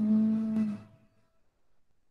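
A man's drawn-out vocal hum that falls in pitch and then holds one level note, ending less than a second in.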